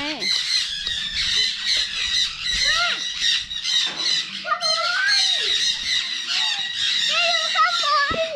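Many caged parrots squawking and chattering without pause, their short, sharp calls overlapping.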